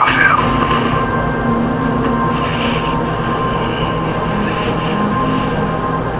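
Soft dramatic underscore from a TV drama, with sustained, drone-like low tones and a steady higher tone that hold with no dialogue.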